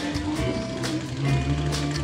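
Live band playing a backing vamp under the stage patter: electric guitar and drums with long held low notes.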